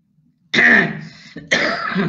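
A man clears his throat twice, about half a second in and again near the end, after a moment of quiet.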